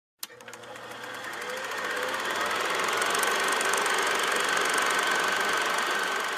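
Film projector running: a fast, even mechanical clatter that fades in over the first two seconds and then holds steady, with a thin whine over it.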